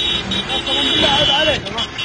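Men's voices calling out over a heavy truck engine running as it tows vehicles, with a steady high whine that stops about a second and a half in.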